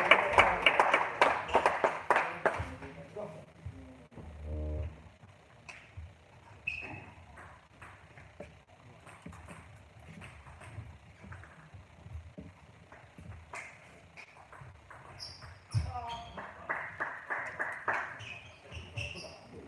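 Sharp clicks of a celluloid-type table tennis ball on bat and table, coming thick and fast at the start, then scattered, with a short quick run of ticks near the end. Indistinct voices carry in the large hall.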